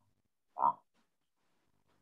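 A man's voice making one brief vocal sound, a single short syllable, about half a second in; otherwise near silence.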